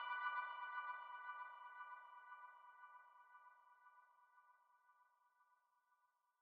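The ringing tail of the final electronic chord of a drum & bass mix: several high steady tones left after the beat stops, fading out over about four seconds.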